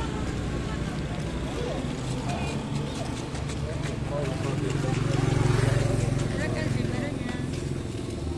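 Busy street ambience: many people's voices chattering and motorcycle engines running, with one engine growing louder and passing about five seconds in.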